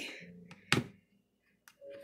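A single sharp plastic click as the flip-top cap of a large parsley-flakes shaker jar is snapped open, about three quarters of a second in.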